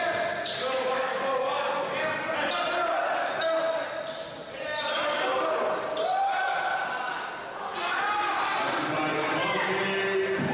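Basketball bouncing on a hardwood gym floor during live play, with players' and spectators' voices echoing in the gymnasium.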